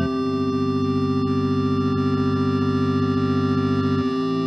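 Live electronic music between sung lines: a sustained organ-like synthesizer chord, one low note of it pulsing quickly, changing to a new chord near the end.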